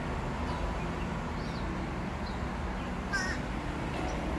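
Outdoor birds calling: small chirps every second or so, and one louder, short call a little after three seconds in, over a steady low background rumble.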